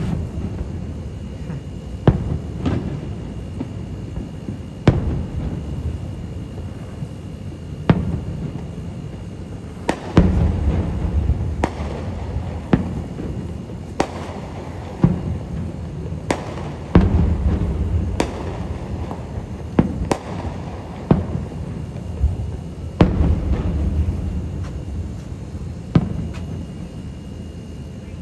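Aerial firework shells bursting: a string of sharp bangs, a few seconds apart at first and then about one a second from roughly ten seconds in, with a low rumble rolling on between them.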